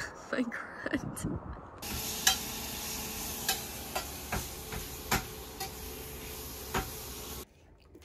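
Food sizzling in a frying pan: a steady hiss with scattered pops and crackles that begins about two seconds in and cuts off abruptly near the end. A few knocks come before it.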